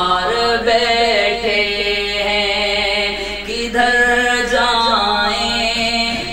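A man singing a Sufi devotional poem (kalam) solo, drawing out long held notes with slow bends in pitch and a short break for breath near the end.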